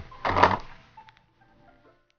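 A short spoken syllable, then faint background music with a few held notes that die away near the end.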